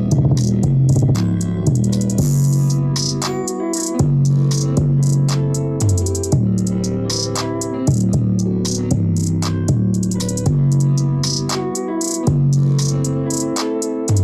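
Instrumental music with plucked guitar, drum-machine beats and heavy bass, played through a DBSOARS Motor Boom 50-watt portable Bluetooth speaker.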